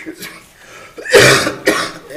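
A man coughing into his fist close to a desk microphone: a loud cough a little over a second in, followed by a shorter second burst.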